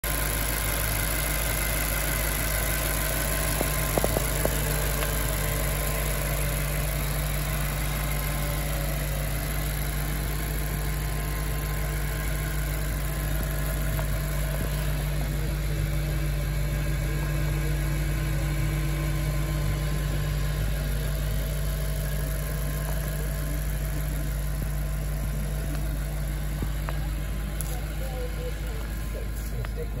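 Audi RS4's 4.2-litre FSI V8 idling steadily, a constant low hum, with a few brief clicks about four seconds in.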